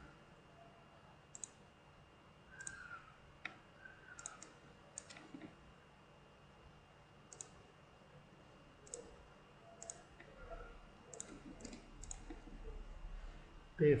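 Computer mouse clicking about a dozen times at irregular intervals, now and then two clicks in quick succession, over a faint quiet background.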